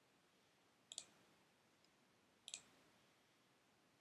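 Two faint, short computer mouse clicks about a second and a half apart, in near silence.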